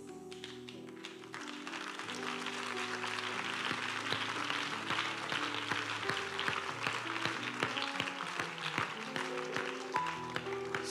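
Background music of soft sustained chords, with a crowd applauding that swells in about a second and a half in and carries on to the end.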